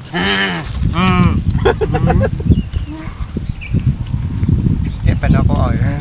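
Men making muffled, hummed 'mmm' sounds with their mouths full while eating potato chips: several short voiced hums and murmurs over a low rumbling noise.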